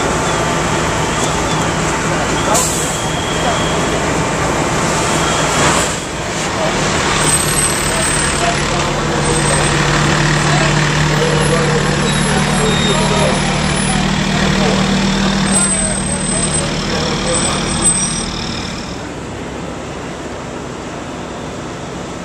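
Fire trucks' engines running with a steady low drone, under a jumble of voices and street noise. The sound drops quieter near the end.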